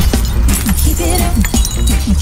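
Reggae riddim music: a heavy, continuous bass line under a run of drum and percussion hits, with short falling pitched notes repeating through it.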